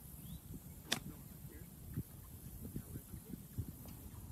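A golf iron striking a ball on a swing, one sharp click about a second in.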